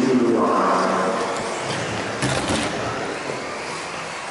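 A person's voice speaking in the first second and a half, then a brief clatter a little over two seconds in.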